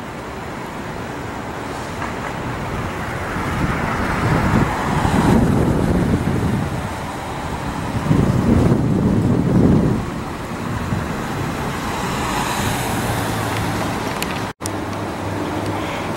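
City street traffic: a steady rush of road noise with two swells as vehicles pass, about five and nine seconds in. The sound drops out for an instant near the end.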